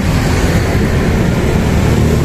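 A steady low rumble of background noise, heaviest in the bass, with no distinct events.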